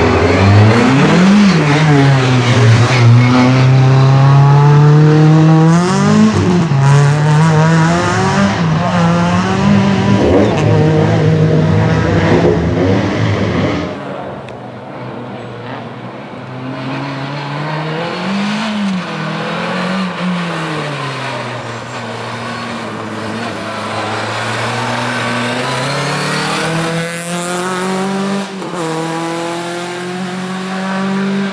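Renault Clio Williams race car's 2.0-litre four-cylinder engine revving hard as it accelerates away, the pitch climbing and then dropping at each gear change. About halfway through the sound cuts to a quieter, more distant run of the same car accelerating up through the gears.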